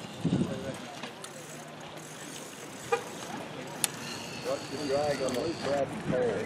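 Voices of people talking at a distance over steady outdoor background noise, the talk growing more noticeable in the second half, with two short clicks about three and four seconds in.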